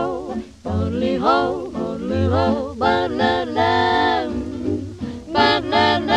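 1930s swing jazz record playing: a melody line that slides and wavers between notes, over low bass notes.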